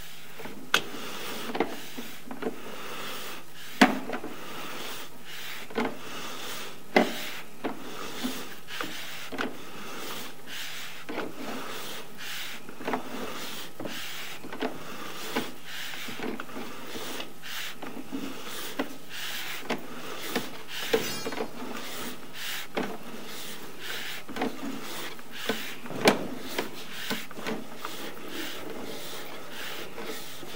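Sewer inspection camera's push cable being pulled back out of the pipe, with irregular knocks, clacks and rubbing, about one or two a second, over a faint steady hum.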